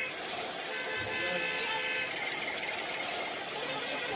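Added vehicle sound effects: engine-like noise with a steady horn-like tone for about a second, and two brief high-pitched whooshes, over background music.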